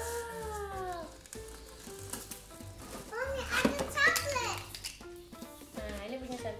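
A young child's high-pitched wordless vocalising: a drawn-out rising-then-falling exclamation at the start, then a burst of quick squealing babble about three to four seconds in, over light background music.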